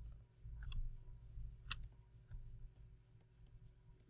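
A few faint, sharp clicks of a computer mouse, two close together under a second in and a stronger one near two seconds in, over a low steady hum.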